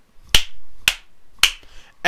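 Three sharp snapping clicks, evenly spaced about half a second apart, each followed by a brief ring.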